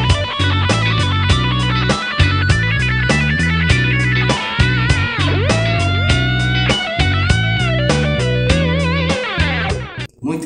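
Electric guitar playing a fast B minor pentatonic lick, its delay echoes set to the backing track's tempo, over a backing track with bass and a steady beat. Several string bends come in the middle, and the music cuts off right at the end.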